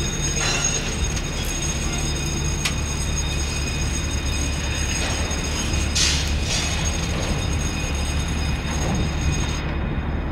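Container crane machinery running as the boom is lowered: a steady low drone with several steady high whines over it. Brief metallic squeals come about half a second in and again around six seconds.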